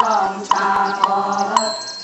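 Ritual group chanting in unison on a steady, drone-like pitch, kept in time by a short percussive knock about twice a second.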